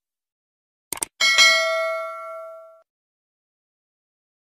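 Subscribe-button animation sound effect: two quick mouse-click sounds, then a notification-bell ding that rings out and fades over about a second and a half.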